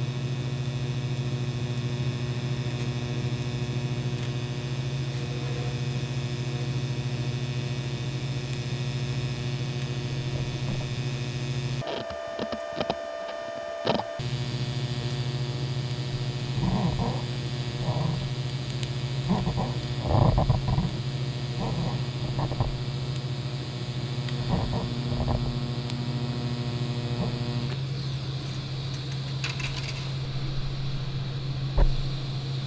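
TIG welding arc on steel tubing, set at about 110 amps, buzzing steadily as a bead is run. About twelve seconds in the arc stops for about two seconds and then restarts, and a few soft knocks follow as the torch and filler rod are worked along the joint.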